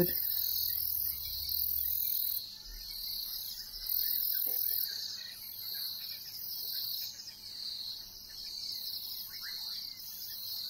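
Steady high-pitched chorus of insects calling from the grass, swelling and fading in phrases of a few seconds.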